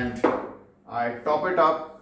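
A man speaking in short phrases, with a brief pause about half a second in.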